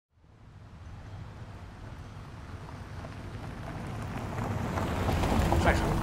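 Low background rumble and hum fading in from silence and growing steadily louder, with a brief faint voice near the end.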